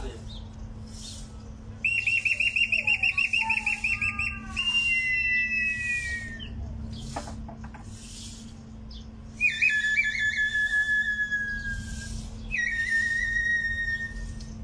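A bird-call whistle imitating birdsong: a fast warbling trill that slides into falling whistles, in three phrases, the last a short falling tone near the end.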